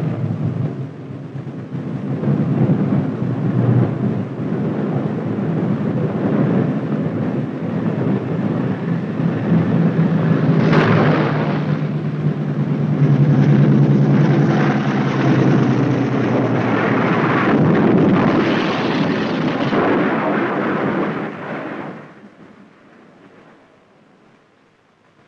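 Engines of a twin-engine B-25 Mitchell bomber running loud and rough as it comes in low, a coarse rumbling drone over a steady low hum. There is one sharp crack about eleven seconds in, and the noise cuts off abruptly near the end.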